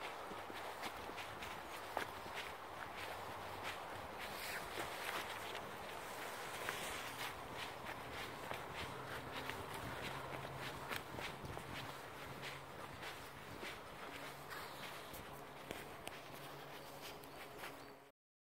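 Footsteps walking steadily along a dirt trail strewn with dry leaves, about two steps a second, with a faint low hum underneath.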